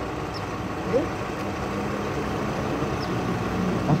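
A vehicle engine idling steadily, with a constant low hum under it.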